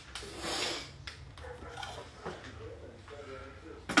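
Quiet kitchen handling noise: a brief rustle or clatter about half a second in, then faint, soft murmuring of a voice over a low steady hum.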